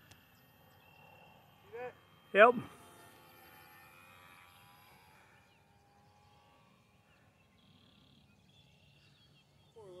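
Faint outdoor background noise, with a faint, steady high whine through the first half that fades out. A man says "yep" about two seconds in.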